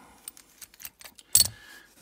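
Sparrows disc detainer pick being worked back out of the keyway of a picked-open Baton 12-disc padlock: faint small metallic clicks, then one loud, sharp metallic click about a second and a half in.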